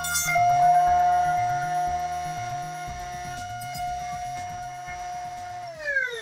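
Table-mounted router motor running with a steady high whine, switched off near the end and winding down in pitch. Background music with a beat plays underneath.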